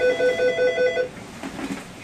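Desk telephone ringing with a rapid electronic warble, about seven pulses a second, which stops about a second in.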